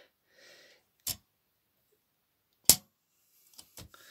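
Mechanical clicks from an Olympia SM9 manual typewriter's metal parts being handled: a short click about a second in, a single sharp click a little later that is the loudest, and a couple of small ticks near the end.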